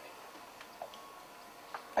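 A pause in speech: quiet room tone with a faint steady hiss and a couple of faint clicks, one a little under a second in and one near the end.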